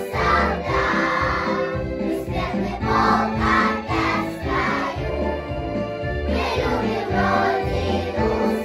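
Children's choir of preschoolers singing a Russian song together, over instrumental accompaniment with a steady bass line.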